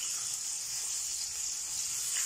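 Sliced onions sizzling in hot olive oil in a stainless steel frying pan: a steady, even hiss.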